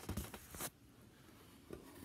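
Unboxing handling noise: a quick run of short rustles and clicks as the box contents and card are handled, in the first half-second or so, then quiet.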